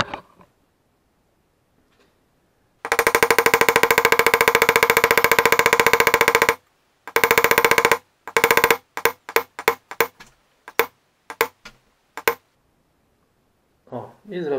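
Hammer blows driving a new bushing into the housing of an Ursus C-360 tractor's starter motor, with the old bushing used as a drift. A rapid, even run of metallic taps lasts about three and a half seconds, then come two shorter runs and about a dozen separate blows.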